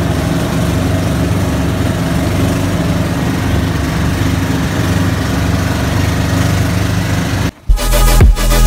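Engine of a motorized outrigger boat (bangka) running steadily underway, with water rushing along the hull. About seven and a half seconds in it cuts off and a louder low sound with knocks begins.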